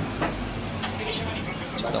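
Steady low rumble of street traffic, as from a heavy vehicle's engine passing by, under a haze of city noise.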